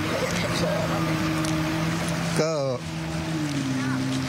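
An engine running at a steady pitch, which drops slightly about three seconds in. A man says one short word partway through.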